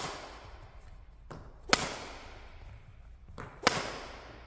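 Badminton racket striking a shuttlecock three times with light, wrist-only backhand overhead hits, about two seconds apart. Each crisp strike echoes around a large sports hall.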